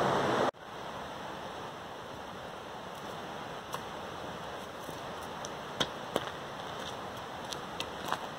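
Steady rushing of creek rapids, loud for the first half second, then fainter and more distant after a sudden drop. A few sharp clicks of footsteps on a gravel trail come in the second half, closer together near the end.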